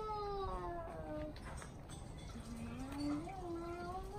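Two long, wailing cries that glide in pitch: the first falls slowly for more than a second, and after a short pause the second rises and holds to the end.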